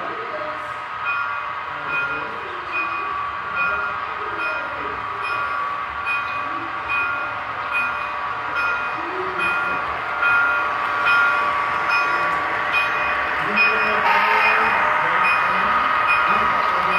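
Electronic bell sound of a model railroad, ringing steadily about twice a second, as a model diesel freight train approaches. From about two seconds before the end the train's running noise grows louder as it passes close by.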